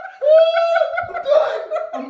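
Laughter and a long, high-pitched strained cry from a man lowering himself into ice-cold bath water, a reaction to the cold.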